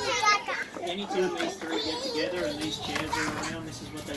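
Toddlers babbling in play: a high squeal right at the start, then drawn-out, sing-song vocalizing in made-up words.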